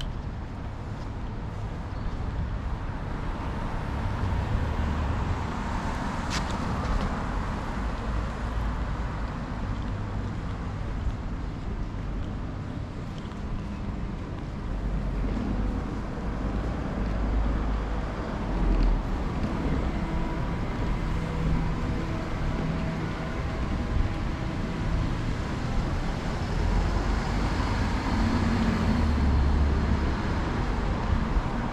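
Street traffic: cars passing on the road alongside, a continuous low rumble of engines and tyres that swells and fades as vehicles go by. A single sharp click sounds about six seconds in.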